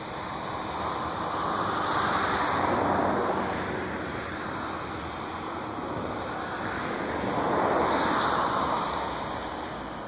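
Rushing noise of passing road traffic, swelling and fading twice, loudest about three and eight seconds in.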